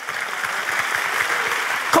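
Audience applause in a large auditorium, steady and even throughout.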